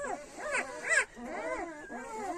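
Newborn Kangal puppies, two or three days old, whimpering and crying in a series of short rising-and-falling squeals, the loudest about a second in.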